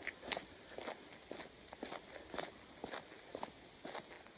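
Faint footsteps of a person walking on a paved road, a steady pace of about two steps a second.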